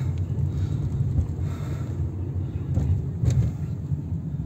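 A steady, fluctuating low rumble with no clear pitch, and a brief sharp click about three seconds in.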